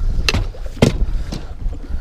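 Wind on the microphone and water against a fishing boat's hull, with three sharp knocks about half a second apart.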